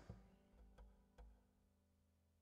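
Near silence: room tone with three faint clicks in the first second and a half.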